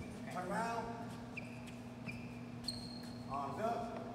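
Sneakers squeaking on a hardwood gym floor: three short, high-pitched squeaks in the middle, between bits of indistinct talk near the start and end, over a steady low hum.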